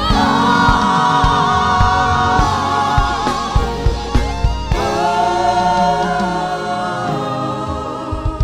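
Live gospel worship music: several singers holding long notes over a band, with regular drum hits. The held notes give way to new ones about halfway through.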